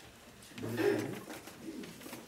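A person's voice making a brief low hummed murmur about half a second to a second in, then fainter.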